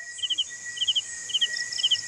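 Night insects: a cricket chirping in quick triplets about twice a second, over a steady high drone and hiss from other insects.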